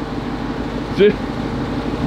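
Steady low hum of a running motor, with a short laugh about a second in.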